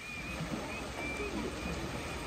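Shallow rocky creek flowing steadily, with faint voices in the background.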